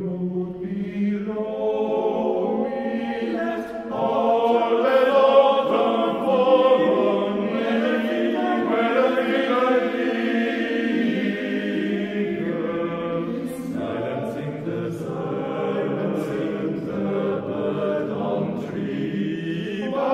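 Men's choir singing sustained chords in harmony, swelling louder about four seconds in.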